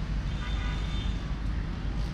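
Steady rumble of city road traffic, with a brief higher-pitched sound about half a second in that lasts under a second.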